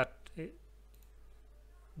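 A man's voice finishing a word and one short syllable, then quiet room tone with faint computer mouse clicks.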